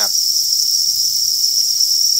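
A dense chorus of farmed crickets trilling together without a break, a steady high-pitched buzz from hundreds of insects.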